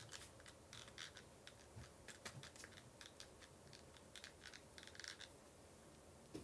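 Faint, scattered light clicks and scratching from makeup products being handled and applied.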